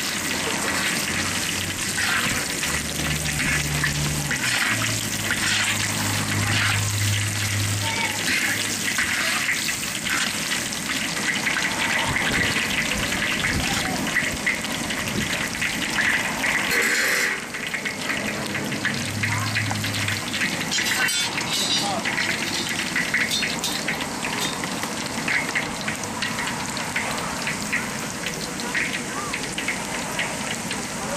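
Ginger sizzling and crackling in hot oil in a large wok over a propane burner, a steady frying hiss as it is stirred.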